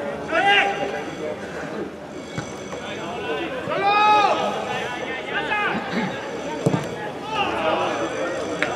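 Footballers shouting to each other across the pitch: several short calls, the longest and loudest about four seconds in. A single sharp thump comes near the end.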